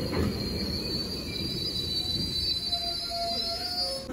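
GO Transit bi-level commuter train pulling into the platform and slowing to a stop, its brakes and wheels giving a steady high squeal over low rumble. A lower squeal joins in the last second as it halts.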